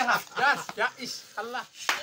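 Men's voices in short, broken bursts of talk or laughter, with one sharp smack just before the end.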